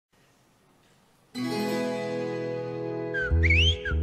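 Instrumental intro: after near silence, a sustained keyboard chord comes in about a second and a half in. Near the end a deep bass guitar joins, with repeated high, rising bird-like whistled chirps.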